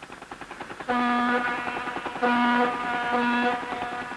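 A ship's horn sounding a single steady pitch in two long blasts, starting about a second in and again just after two seconds.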